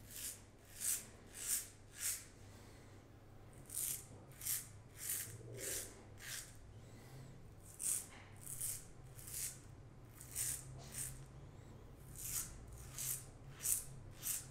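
A double-edge safety razor with a Morris Stainless blade, on its second shave, scraping through lathered stubble on the neck. It makes short rasping strokes about two a second, in runs with brief pauses.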